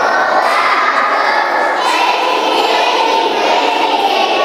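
A group of young children's voices, loud and continuous, shouting together over crowd noise.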